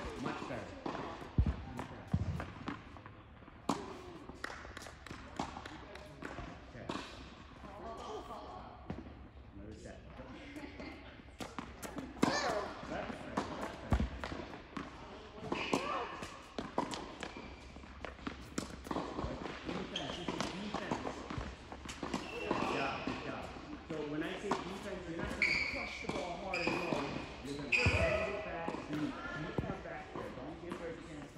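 Tennis balls being hit by rackets and bouncing on an indoor hard court, a string of sharp pops and thuds spaced irregularly, ringing in a large hall.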